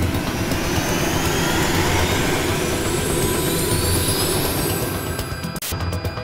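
Jet-engine flyby sound effect for a cartoon spaceship: a loud rushing noise with a whine that rises steadily in pitch, cutting off suddenly near the end.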